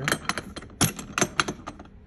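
Hard plastic clicks and knocks from a Ridgid tool box being handled as its latches are worked and its lid is opened: a quick, irregular run of sharp clicks.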